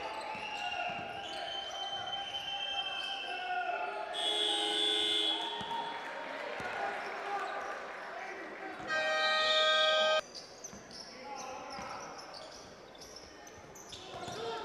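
Basketball court sounds in an echoing arena hall: a ball bouncing and shoes squeaking on the floor, with a short shrill tone about four seconds in. About nine seconds in the end-of-quarter horn sounds, one steady tone for just over a second that cuts off sharply.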